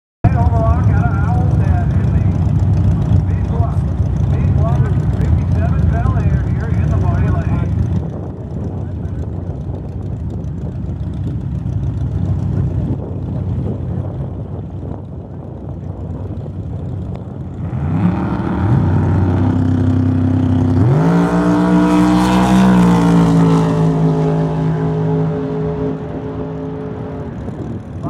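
Two drag-racing cars at the starting line: a loud heavy engine rumble that drops back to a lower running note after about eight seconds, then engines revving up about eighteen seconds in and launching about three seconds later, the engine note climbing sharply, holding high and fading as the cars run down the strip.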